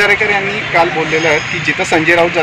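Speech: a man talking in Marathi, with a steady low hum in the background.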